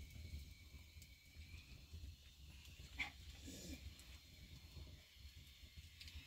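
Near silence: a faint low hum, with one short faint sound about three seconds in.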